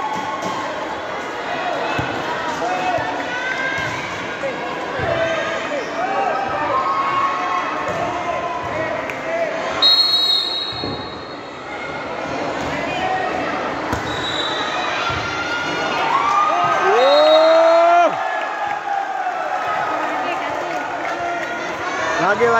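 Volleyball match in a reverberant sports hall: a few sharp thuds of the ball striking hands or bouncing on the court, over the chatter and calls of players and spectators. A short high whistle blast sounds about halfway through, and a loud rising shout near the end.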